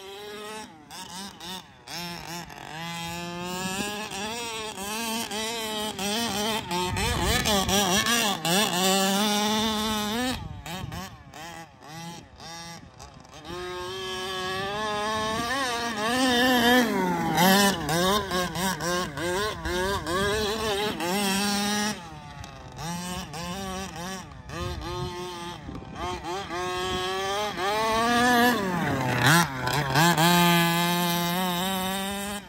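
The HPI Baja 5T RC truck's OBR full-mod 30.5cc Zenoah two-stroke engine, fitted with a DDM Dominator pipe, running very loud and revving up and down over and over as the truck is driven hard on sand. Its pitch climbs and falls with each blip of the throttle, and it dips quieter for a few seconds near the middle.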